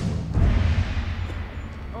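A sudden deep boom with a long hissing wash that fades away over about a second and a half, like a dramatic impact hit from a film soundtrack.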